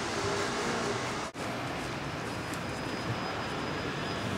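Steady outdoor background noise, a continuous hiss over a low rumble, that drops out for an instant a little over a second in.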